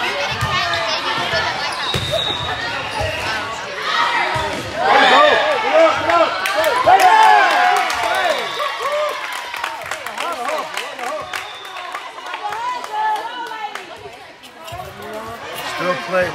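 Volleyball rally: sharp thuds of the ball being struck, then players and spectators shouting and cheering, loudest about five seconds in and fading over the following seconds.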